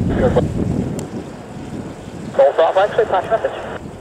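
Air traffic control radio chatter from an airband scanner, thin and clipped: a brief tail of one transmission at the start, then another short call about two and a half seconds in. Underneath is a low, gusty rumble of wind on the microphone that dies away after about a second and a half.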